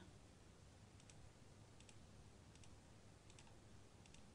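Near silence broken by four faint computer mouse clicks, each a quick double tick of press and release, about every three-quarters of a second as the healing brush is applied.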